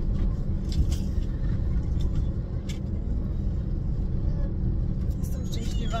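Steady low road and engine rumble inside the cabin of a car being driven, with a couple of short clicks.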